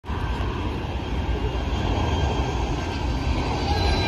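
Jet airliner's engines on final approach, a steady rumble with a thin whine that grows a little louder near the end.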